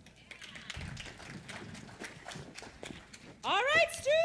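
Footsteps and shuffling of children moving about a stage floor, a quick, irregular run of taps. Near the end a voice starts a long, drawn-out call that rises in pitch.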